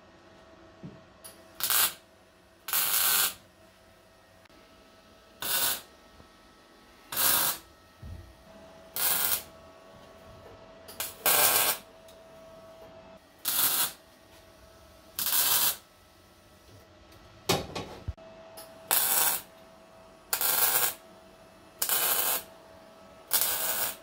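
Short bursts of arc welding, tack welds laid into a car's steel floor pan, each under about a second and repeating every one and a half to two seconds, about a dozen in all, with a faint steady hum between them.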